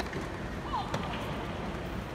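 Murmur and chatter of a large crowd of tennis spectators in a stadium. Two short, sharp knocks come about a second apart.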